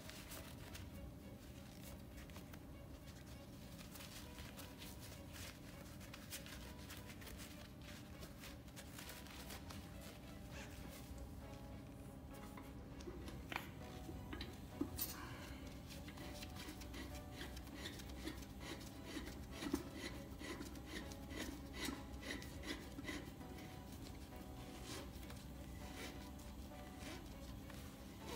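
Faint handling sounds of gloved hands screwing a hose fitting onto the neck of a liquid nitrogen dewar: light clicks and rubbing, more frequent in the second half, over a faint steady background hum.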